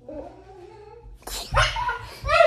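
A young child's voice making a nonverbal sound: a long, low, closed-mouth hum. About a second in comes a sharp breathy burst, then a short, louder vocal sound near the end.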